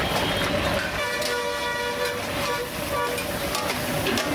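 A horn sounds, held for about a second and a half from about a second in, with a shorter toot near the end. Under it, crab curry frying in an iron wok while it is stirred with a metal ladle.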